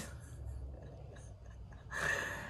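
A quiet pause in speech: faint room noise with a low hum underneath.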